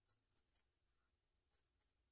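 Faint, short snips of small scissors cutting through the white backing around beadwork: three close together near the start, then two more about a second and a half in.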